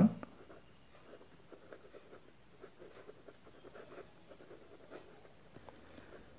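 Pen writing on paper: faint, irregular scratching strokes as words are written out.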